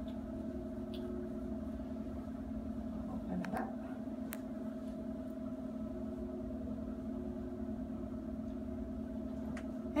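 Steady mechanical room hum, two fixed tones over a low rumble, with a few faint soft sounds of a folded cloth robe being handled about three and a half seconds in.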